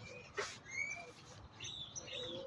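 Faint, short bird chirps in the background, with a brief sharp click about half a second in.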